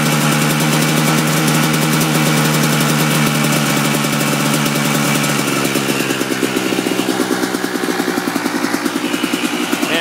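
Kawasaki KDX220R two-stroke single-cylinder engine running, held slightly above idle and then settling back to idle about halfway through, its beat turning more pulsing as the revs drop.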